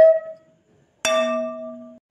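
The last held flute note of intro music fades out, then after a short silence a single bell-like chime is struck about a second in, ringing with one steady tone over a lower hum. It cuts off abruptly near the end.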